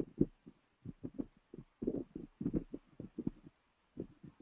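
Computer keyboard typing: irregular, muffled key taps, about four a second.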